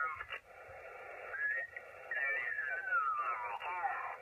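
Lower-sideband voice from a Yaesu FT-897 transceiver receiving on the 40 m band, sliding in pitch as the tuning knob is turned across a station. There is a short dip shortly after the start, and the voice glides steadily downward in the second half.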